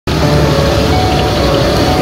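Pressurized gas wok burner running loudly and steadily under a large steel wok, with a metal spatula scraping fried rice against the pan.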